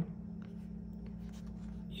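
Faint handling noise of fingers rubbing and turning a plastic headphone earcup, a few soft scratches and ticks, over a low steady hum.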